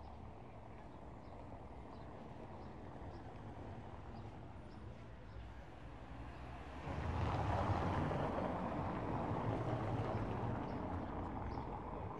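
A car driving past close by on a cobblestone road. Its tyre and engine noise rises suddenly about seven seconds in and fades slowly over the last few seconds, over a steady street background.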